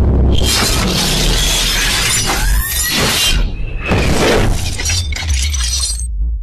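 Cinematic intro sound effects: rushing whooshes and crashing, shattering metallic hits over a deep bass rumble and music, with a rising sweep about two and a half seconds in.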